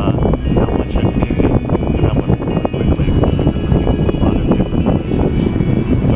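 A loud, rough rumbling noise with crackle that covers everything else.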